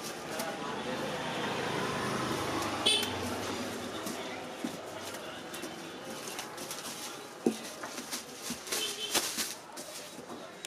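Busy background of indistinct voices and general market noise, with a short high-pitched toot about three seconds in and a few sharp clicks or knocks in the second half.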